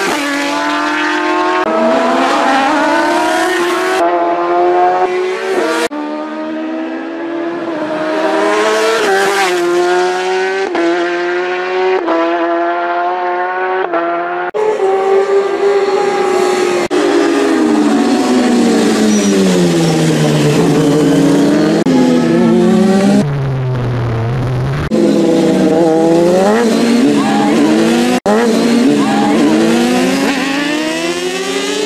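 Racing sport motorcycles' engines at high revs, pitch climbing through the gears and dropping as the bikes brake and pass, in a string of separate passes cut one after another. Near the middle, one long pass falls and then rises again in pitch.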